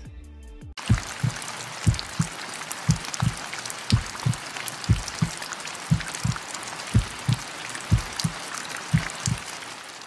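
Produced rain-and-dripping-water sound: a steady hiss of rain flecked with fine drop ticks starts about a second in. Under it runs a low double thump about once a second, like a heartbeat.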